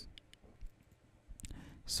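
Faint clicks from a computer mouse: a few light ticks in the first second and another about a second and a half in, as the page is scrolled.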